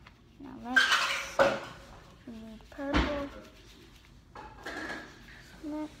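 Two sharp knocks of hard craft things set down or tapped on a tabletop, about one and a half and three seconds in, the second the louder, among short bits of a child's voice.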